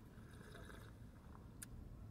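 Near silence inside a car cabin: a low steady rumble, with a faint, brief sip from a paper coffee cup and one small click.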